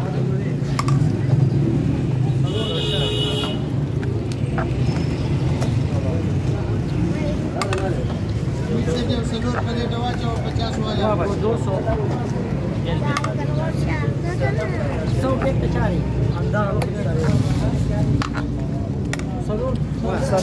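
Busy roadside ambience: several men talking around the stall over a steady low traffic rumble, with scattered short clicks and a brief high beep about three seconds in.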